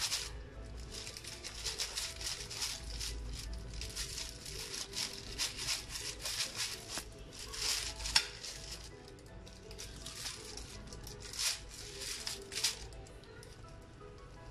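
A blue plastic bag crinkling and a knife cutting and scraping through the rind and fibrous flesh of a cempedak as it is split open, in many short crackles with a sharper click a little past halfway. Faint background music runs underneath.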